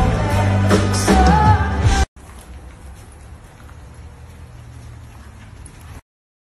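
A woman singing a pop song live into a microphone over a loud band, cut off abruptly about two seconds in. After that there is only a faint steady background with a low hum.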